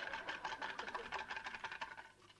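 Rapid, evenly spaced mechanical clicking, roughly ten clicks a second over a steady high tone, cutting off abruptly at the end.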